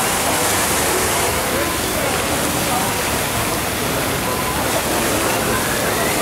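Steady rush of water with scattered crowd chatter in an amusement park.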